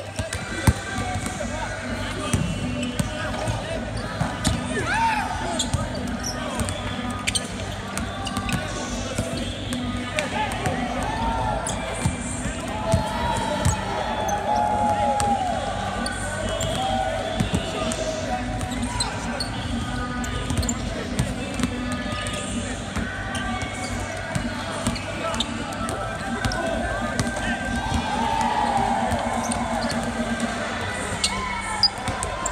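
Several basketballs bouncing on a hardwood court during a team shooting practice, a scatter of sharp dribble and rebound impacts all through.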